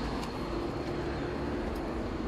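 Steady background rumble of road traffic, with a faint constant hum.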